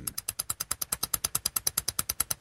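Rapid, even clicking, about fourteen clicks a second.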